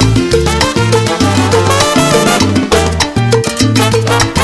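Instrumental salsa passage with no vocals: a bass plays a repeating pattern of low notes under sharp, busy percussion and pitched parts above.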